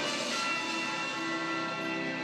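Intro music from a channel's logo animation: sustained, bell-like chiming tones, with a fresh chord struck at the start and held through.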